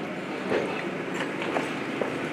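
A few soft knocks and handling noises close to the lectern microphone as a second person steps up to it, over the steady murmur of a large hall.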